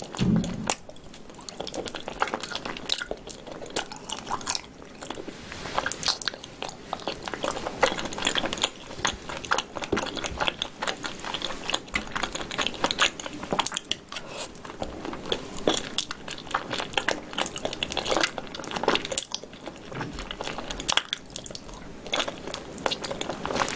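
Close-up chewing of braised pig tail: a steady run of wet clicks and crackles from the mouth, with no pause.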